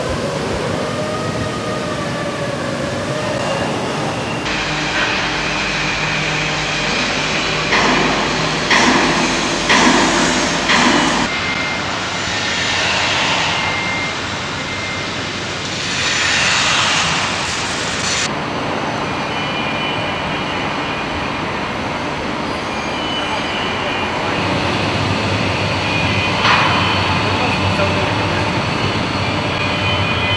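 Engine assembly line noise in a car plant: a steady machinery hum with thin electric whines, a run of knocks and clanks about a third of the way in, and a couple of rushes of noise. The sound changes abruptly every several seconds as the shots change.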